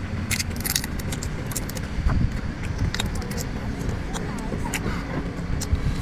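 A cooked prawn being peeled and eaten: a scattering of sharp clicks and crackles from shell and mouth, over a steady low rumble.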